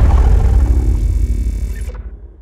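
Studio logo ident sound effect dying away: a loud, deep rumble that fades steadily, with a bright shimmer over it that cuts off suddenly near the end.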